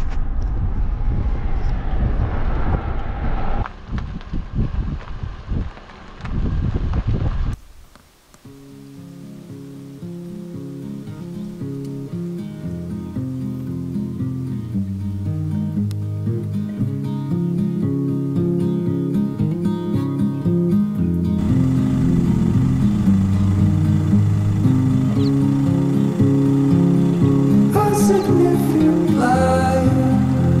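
Car driving, with engine and road noise heard from inside the cabin and a dip about four seconds in. The noise cuts off suddenly after about seven seconds. Slow background music with long held notes then fades in and grows louder.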